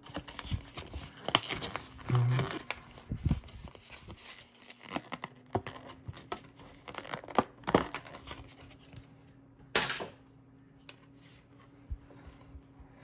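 Pokémon card blister pack being pried open: the clear plastic tray crinkling and clicking and its cardboard backing tearing, in irregular crackles with a few sharper snaps, the loudest about two seconds in and near the end.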